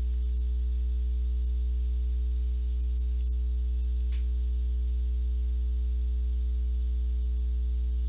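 Steady electrical mains hum with a stack of evenly spaced overtones, and a single faint click about four seconds in.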